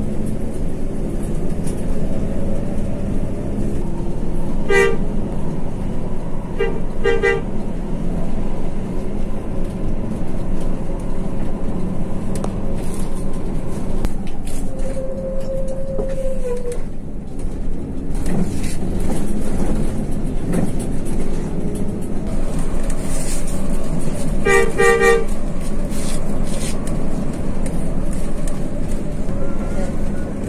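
Steady engine and road noise heard from inside a moving bus's cab, broken by short two-note horn toots: one about five seconds in, two around seven seconds, and a quick run of toots near twenty-five seconds. A longer single-note horn sounds around the middle.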